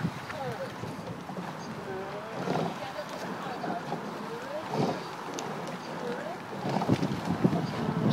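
Raised, shouting voices come and go over wind noise on the microphone as a rowing eight races past. Short knocks sound about every two seconds, in time with the crew's strokes.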